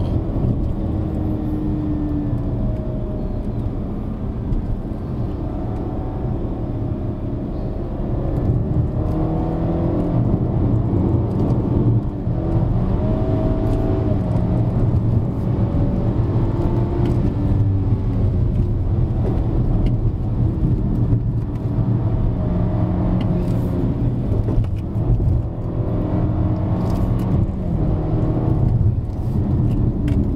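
BMW F30 330i's turbocharged four-cylinder engine, heard from inside the cabin while being driven hard uphill. Its note rises and falls again and again as it accelerates and changes gear, over steady road rumble.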